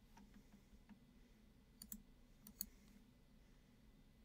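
Faint computer mouse clicks over near-silent room tone: two quick double-clicks, about two seconds in and again half a second later.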